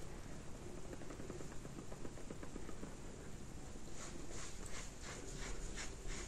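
Faint, quick, light taps of a makeup sponge dabbing foundation into the skin.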